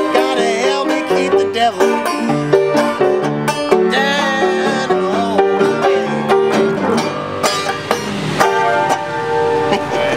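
Upright piano and banjo playing an instrumental passage together, the banjo picking quick notes over the piano's chords.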